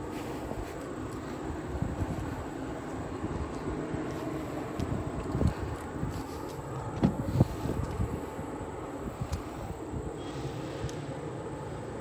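Steady outdoor background noise with a few faint knocks, two of them close together around the middle.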